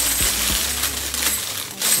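Many small hard pieces rattling and clinking inside a clear plastic pouch as it is shaken, getting louder near the end.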